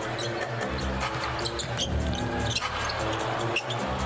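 A basketball being dribbled on a hardwood court during live play, with arena music of short held notes playing over the game.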